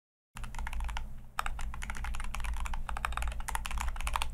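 Rapid typing on a computer keyboard: a dense run of quick keystroke clicks that starts after a brief moment of dead silence.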